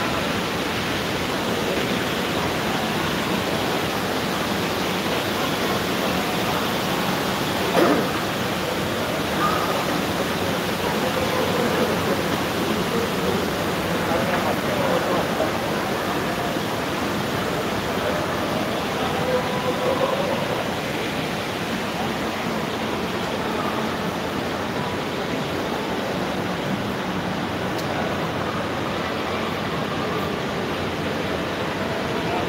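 Steady ambient hubbub of an indoor shopping mall: an even wash of noise with faint, distant voices, and one brief sharp knock about eight seconds in.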